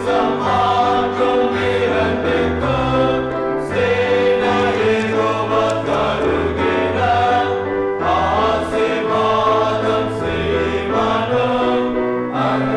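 Church choir singing the final verse of a Tamil Christian hymn, in held, stepwise notes with sustained low notes beneath.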